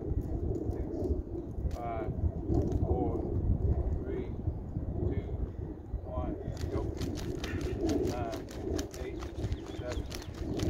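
Wind rumbling on the microphone. From about six and a half seconds in come quick, repeated footsteps on dry dirt and grass as a sprinter drives forward against a resistance-band speed harness. A bird calls now and then.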